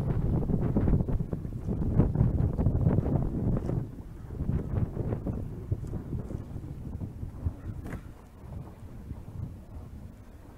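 Wind buffeting the microphone outdoors, a gusty low rumble that is strongest in the first few seconds and then eases off.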